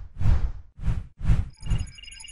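Produced sound effects: a run of short, heavy whooshing hits about half a second apart, followed by a high bell-like chiming that starts near the end.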